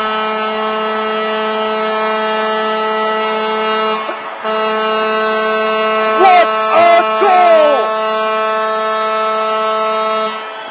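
Hockey arena goal horn sounding a long, steady, single-pitched blast for a home-team overtime winner. It drops out briefly about four seconds in and then sounds again. A few shouted voices come through over it between about six and eight seconds.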